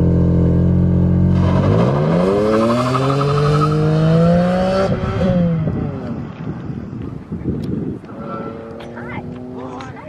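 BMW E46 M3's straight-six, breathing through a Rogue Engineering exhaust, held at a steady rev on launch control. About one and a half seconds in it launches, and the revs rise steadily through first gear until about five seconds in. Then the note drops and fades as the car pulls away.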